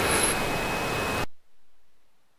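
Steady hiss of audio-line static with a thin, steady high whine through it and a brief high squeak at the start. It cuts off suddenly about a second in, leaving near silence. It is the sign of a fault on the broadcast line, which the speaker puts down to a microphone problem.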